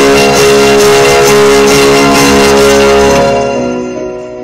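Live band playing loud music with violin, with regular strikes running through it; a little over three seconds in the full band drops away, leaving quieter sustained notes.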